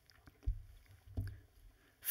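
Two dull, low thumps on a lectern, about half a second apart from the start and again just after a second in, picked up close by the lectern microphone, with a few faint clicks of handling between them.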